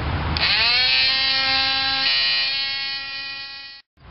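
Small electric power tool spinning up about half a second in and running with a steady whine while sanding the edge of a freshly cut hole in a fiberglass boat hull. It cuts off suddenly just before the end.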